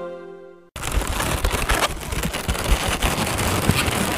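Theme music fades out, then close-up latex modelling balloons being handled and twisted: dense rubbery rubbing and crackling with small clicks and squeaks.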